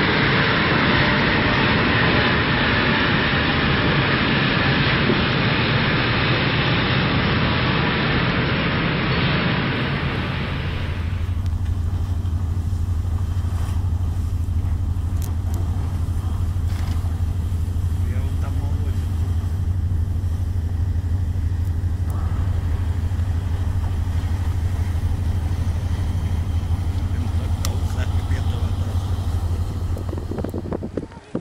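Loud, steady rushing noise that changes abruptly about ten seconds in to a steady low mechanical hum, like a large engine, with a few faint ticks.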